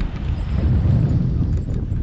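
Wind buffeting the microphone of a stick-held camera on a paraglider in flight: a loud, steady, low rumble.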